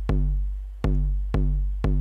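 Eurorack bass drum module triggered by the GateStorm gate sequencer, playing kick drum hits in an uneven, syncopated pattern. There are four hits in two seconds, each a sharp click followed by a deep boom that fades away.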